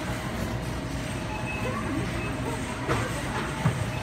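Steady low mechanical rumble from an automated key-copying kiosk and the store around it while the machine identifies an inserted key, with two short clicks in the last second or so.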